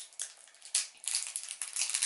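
Small plastic packet crinkling as fingers work it open: irregular crackles, busier in the second half.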